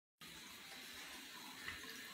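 A thin stream from a bathroom faucet running steadily into a sink and splashing over a small parrot bathing under it, faint, with one brief louder splash near the end.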